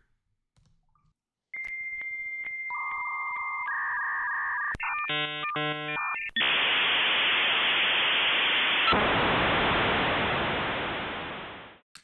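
Dial-up modem handshake sound: a steady high tone, then a pair of lower tones, a rapid chopping warble, and then a long hiss that fades out near the end.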